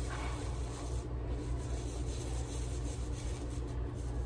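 Toothbrush bristles scrubbing a small animal jawbone in gentle circles: a steady, soft rubbing.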